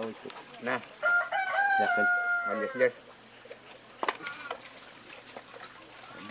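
A rooster crowing once, a single long call of about two seconds beginning about a second in.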